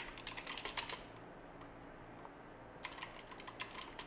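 Typing on a computer keyboard: a quick run of key clicks, a pause of about two seconds, then another burst of typing near the end.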